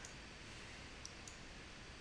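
A few faint clicks of a computer mouse over quiet room tone.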